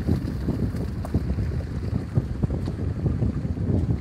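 Wind buffeting the microphone: a low, uneven rumble that swells and dips in gusts.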